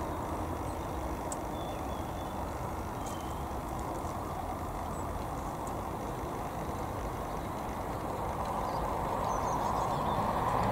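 Steady low rumble of distant road traffic, swelling a little near the end.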